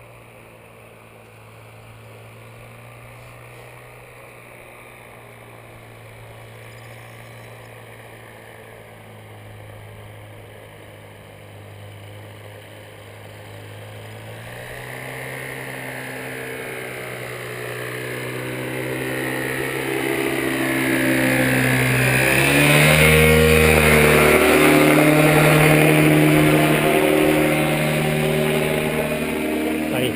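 Paramotor's two-stroke engine and propeller droning steadily as it flies in low, growing much louder from about halfway through as it comes close overhead. Its note steps up a little about three-quarters of the way through.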